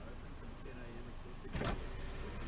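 Faint talking over a low steady hum, as inside a car stopped at traffic lights, broken about one and a half seconds in by a single short loud thump.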